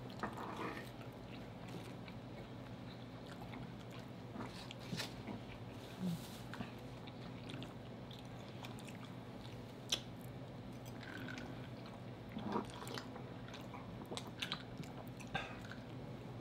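People chewing food quietly, with a few soft, scattered mouth clicks and smacks over a steady low hum.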